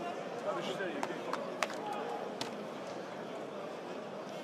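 Field sound of a rugby match in play: a steady wash of stadium noise with faint distant voices, and a few sharp knocks about one, one and a half and two and a half seconds in.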